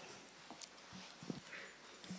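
Quiet hall room tone with a few faint short knocks and stirrings, about half a second, one second and just over a second in.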